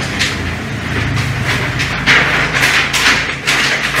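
A large sheet of flip-chart paper rustling and crackling as it is lifted and turned over the pad, with louder crinkles in the second half.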